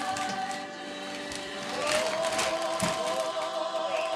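Choir music playing with long held notes, with a short stretch of paper rustling near the middle.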